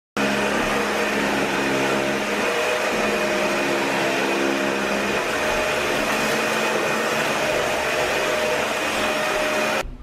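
Upright vacuum cleaner running steadily, a loud rushing hiss with a constant motor whine, starting and stopping abruptly.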